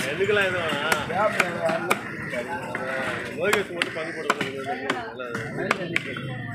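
A heavy steel cleaver chopping a paarai (trevally) into pieces on a wooden log block: a series of irregular sharp knocks as the blade goes through the fish and strikes the wood, with voices talking in the background.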